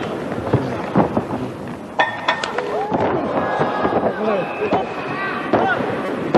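Match audio from a pro wrestling bout: repeated sharp slaps and thuds of bodies hitting the ring, with voices shouting over them.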